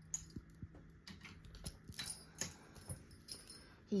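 Faint scattered clicks and soft rustling of a kitten moving about on a fluffy blanket, over a low steady hum.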